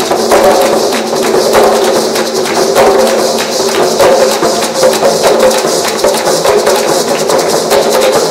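Traditional Colombian Caribbean percussion ensemble of hand-struck drums, rope-laced and rimmed, with maracas. They play a fast, dense, continuous rhythm.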